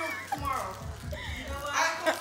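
Children's voices and chatter in a household, faint and off-mic, with a few soft low thumps in the middle.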